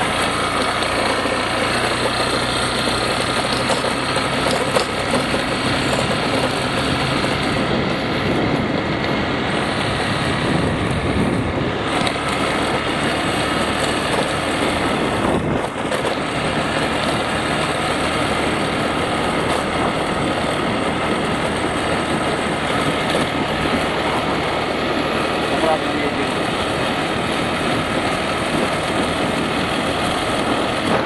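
150cc scooter under way at a steady cruise of about 40 km/h: the engine runs evenly beneath a steady rush of wind and road noise.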